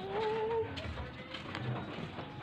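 A pigeon cooing once: a single short, steady note about half a second long at the start, over a faint low background hum.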